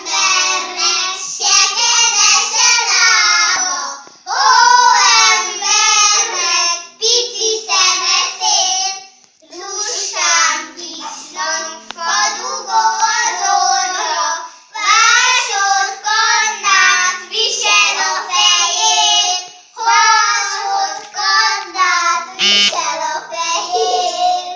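Three young children singing a song together, in phrases with short pauses for breath between them.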